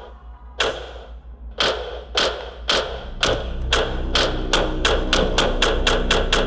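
Trailer sound design: a run of heavy percussive thuds that come faster and faster, from about one a second to several a second, each ringing briefly, over a steady low drone.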